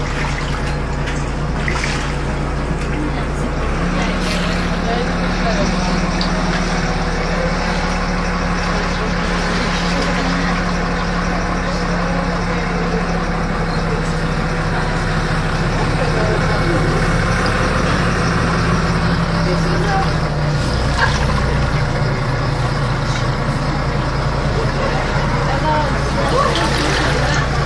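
City bus engine running, heard from inside the passenger cabin: a steady drone whose pitch steps up about four seconds in and drops back about twenty seconds in as the bus drives.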